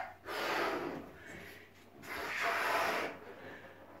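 A balloon being blown up by mouth: two long breaths rushing into it, the second louder than the first, with a short pause between them.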